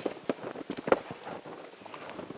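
A quick, irregular run of soft knocks and crunches, the loudest about a second in.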